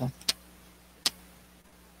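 Two sharp clicks about three quarters of a second apart, over a faint steady hum: computer mouse clicks as the presenter moves on to the next slide.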